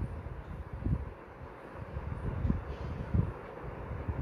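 Low background rumble with several soft, brief thumps.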